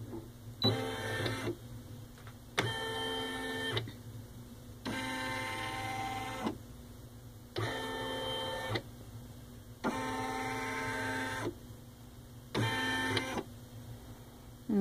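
Baby Lock Ellure Plus embroidery unit driving the hoop in six short motor runs with brief pauses between, tracing the outline of the embroidery area to check the design's placement on the fabric.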